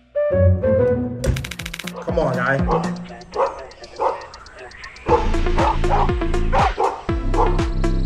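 Background music with a dog barking a few times over it; a steady, bass-heavy beat comes in about five seconds in.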